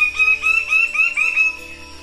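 A male plumed bird of paradise calling a quick series of short rising notes, about five a second, which stops about a second and a half in, over background music.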